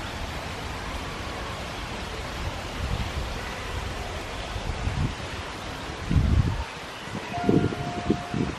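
Outdoor ambience with steady wind noise rumbling on the microphone, broken by a few low thumps. A short steady tone sounds near the end.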